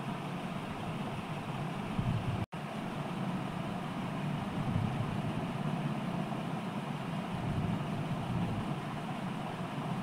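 Steady low background rumble with a hiss above it, broken by a brief drop-out about two and a half seconds in.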